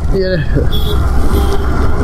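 Steady low wind rumble on the microphone and road noise from a motorcycle moving along a wet road in rain.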